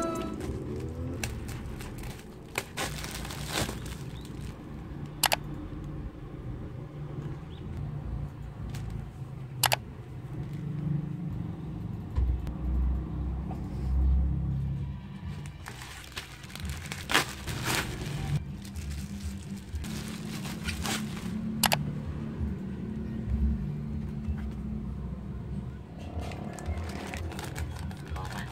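Handling sounds of items being unpacked on a wooden desk: scattered sharp clicks and taps over a low steady rumble, with plastic packaging rustling near the end.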